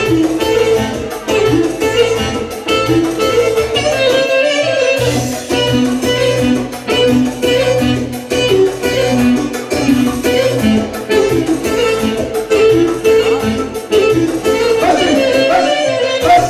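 Live band playing up-tempo dance music with a steady drum beat and a strong bass line; the bass and drums drop out briefly about five seconds in.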